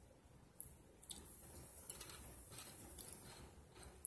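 Faint eating and mouth sounds from someone tasting bean dip on a chip: soft smacks with a few sharp clicks, about half a second in, a second in and three seconds in.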